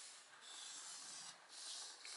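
Felt-tip marker rubbing on paper, faint: a scratchy stroke about a second long, then a shorter one near the end.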